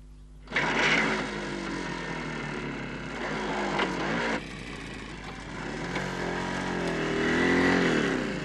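A small motorcycle engine starts abruptly and revs up and down. It drops back a few seconds in, then revs up again near the end.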